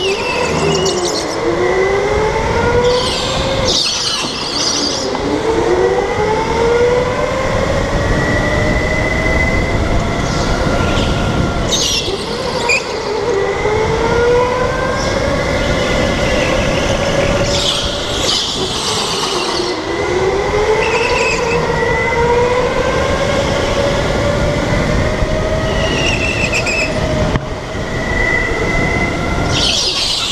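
Onboard sound of an electric go-kart's motor whine, climbing in pitch along each straight and dropping sharply into each turn, about five times. Brief bursts of tyre scrub come in the turns.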